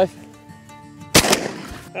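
A single shotgun shot a little over a second in, with a short fading tail.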